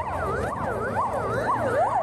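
Emergency-vehicle siren in a fast yelp, its pitch sweeping up and down about twice a second.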